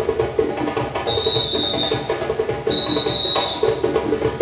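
Ensemble of djembe-style hand drums playing a steady rhythm, with two long blasts of a whistle, one about a second in and one near the end.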